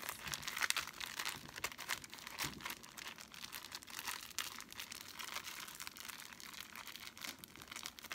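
Plastic zip-top bag crinkling as hands squish and knead the flour-and-water paint paste inside it, an irregular crackle throughout.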